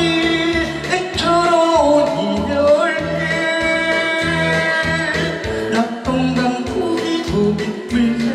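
A man singing a Korean trot song live into a microphone over a backing track, holding long drawn-out notes above a steady bass beat.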